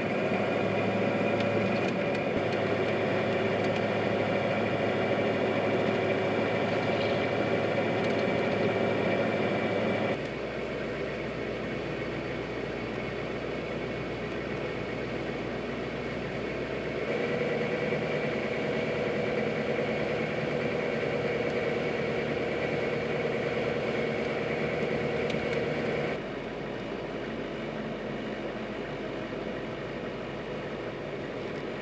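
Diesel engine of a military truck running steadily while driving, heard from inside the cab. The engine note and level change abruptly three times, about a third of the way in, a little past halfway and near the end.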